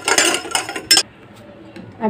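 Metal spoon stirring sugar syrup in a steel saucepan, scraping and clinking against the pan, ending with one sharp clink about a second in.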